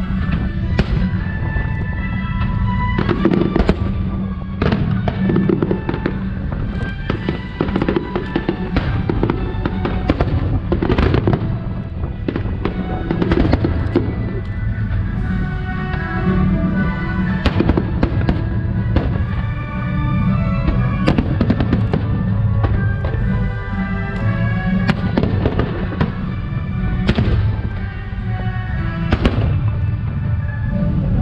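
Aerial firework shells bursting in a steady run of sharp bangs, roughly one a second, with loud music playing underneath throughout.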